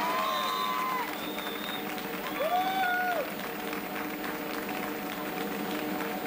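Studio audience clapping over the house band playing, with drums and sustained held notes underneath.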